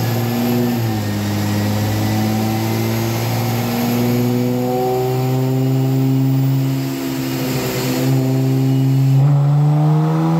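Supercharged 3.6-litre Pentastar V6 of a Dodge Challenger running on a chassis dyno, engine speed climbing slowly under load. The rise steepens near the end.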